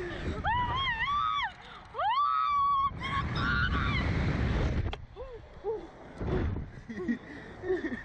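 A slingshot-ride rider screaming: two long, very high-pitched wavering screams in the first three seconds, over wind rushing past the ride's microphone. Shorter, lower voice sounds follow in the last few seconds.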